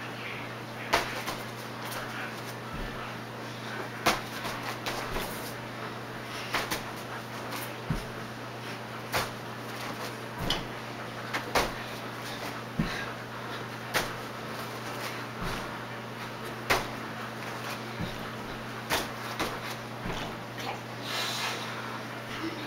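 Irregular thumps and taps of feet landing and stepping on a floor and a gym mat during jumping exercises, about one every one to three seconds, over a steady low hum.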